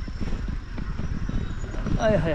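Mountain bike rolling down a rough dirt singletrack, its frame and chain rattling and knocking irregularly over the bumps, over a low rumble of tyre and wind noise.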